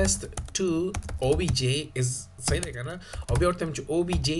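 Computer keyboard typing: a run of key clicks as a line of code is entered, with a press of Enter partway through.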